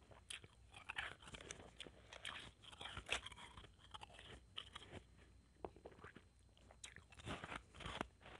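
Blended ice being bitten and chewed, a dense run of small irregular crunches, with one sharper crunch about three seconds in.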